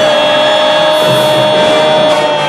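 Music: one long, steady held note over a busy backing.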